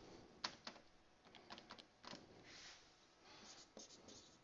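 Faint marker-pen writing on a whiteboard: short scratchy strokes and light taps of the tip as numbers are written, the sharpest tap about half a second in.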